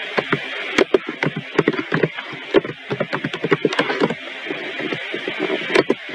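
Computer keyboard being typed on: a run of many quick, irregular key clicks.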